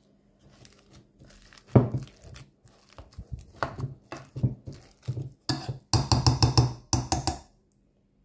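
A metal kitchen utensil mashing boiled potatoes in a glass bowl, knocking and scraping against the glass. The strokes are scattered at first, then come quick and loud near the end.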